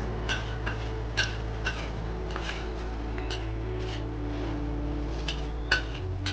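Metal spatula striking and scraping a wok as fried rice is stir-fried, about ten sharp ringing clinks at an uneven pace, over a steady low hum.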